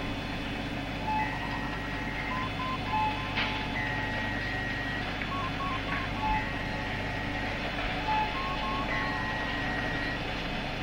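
Electronic beeping tones in a repeating pattern: a higher held beep about every two to three seconds, alternating with clusters of quick lower blips, over a steady low hum. It is a sci-fi computer-style sound bed.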